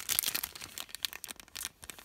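Clear plastic packaging sleeve crinkling as it is handled, a run of quick crackles.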